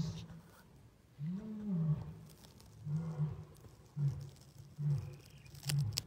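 White lion roaring in a bout: a long rising-and-falling moan followed by a series of shorter grunts, about one a second.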